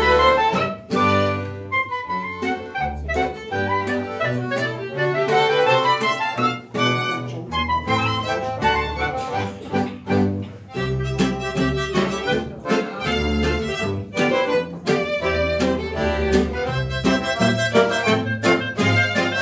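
A traditional Swiss folk ensemble playing an old folk tune on violin, clarinet, Hohner button accordion and acoustic guitar, with low notes keeping a steady beat.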